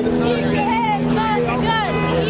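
People talking over the steady drone of vehicle engines in street traffic.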